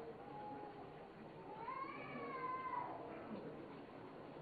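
A faint, drawn-out call that rises and then falls in pitch, lasting about a second, with a shorter, fainter tone just before it.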